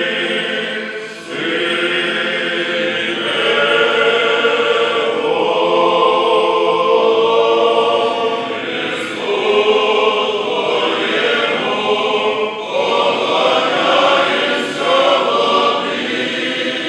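Orthodox church choir singing unaccompanied liturgical chant in held chords, phrase after phrase, with short breaths between phrases.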